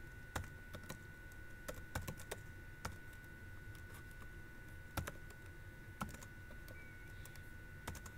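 Computer keyboard typing: scattered, irregular keystrokes with a long pause in the middle, soft against a faint steady high whine.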